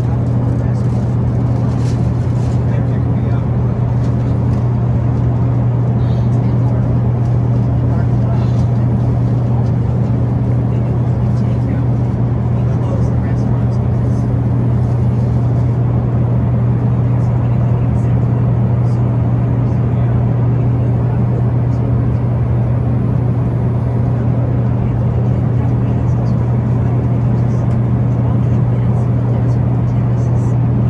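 Steady drone inside a jet airliner's cabin in cruise flight: engine and airflow noise with a strong low hum, unchanging in level.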